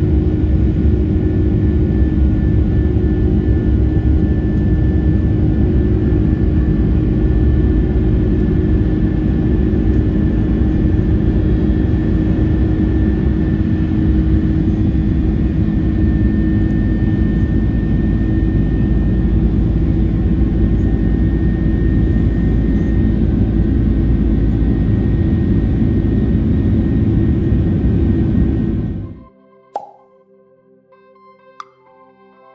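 Steady cabin roar of an Airbus A330-300's Rolls-Royce Trent 700 turbofans climbing after takeoff, heard from a window seat beside the engine: a deep rumble with a steady hum and a faint high whine. It fades out about a second before the end.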